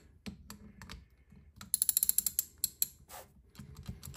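Small ratchet wrench clicking as its handle is swung back and forth on the overdrive casing nuts, the nuts being loosened gradually and evenly to release the casing. It starts with scattered single clicks, then a fast run of clicks a little under two seconds in lasts about a second, and a few more clicks follow.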